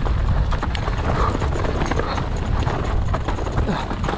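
Mountain bike riding down a dirt forest trail: a steady low rumble of wind on the camera microphone and tyre noise, with a constant clatter of short clicks and knocks from the bike over the rough ground.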